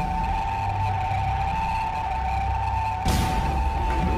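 Ship's fire alarm sounding one steady high tone, over dark soundtrack music with a low rumble; a burst of hiss comes in about three seconds in.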